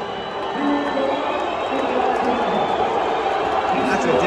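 Large arena crowd cheering and chattering, with music playing over it.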